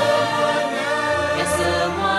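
A choir singing with musical backing, the voices holding long sustained notes.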